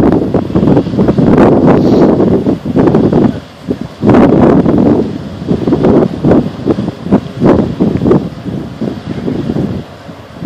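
Wind gusting hard across the microphone, a loud irregular rush that swells and eases, dropping briefly about three and a half seconds in.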